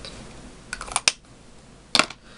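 Small hard plastic clicks from handling a makeup stick and its cap: a quick cluster about a second in, then one sharp, louder click at the end.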